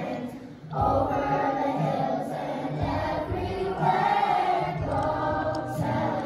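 Children's choir singing; the voices break off briefly for a breath and come back in just before a second in.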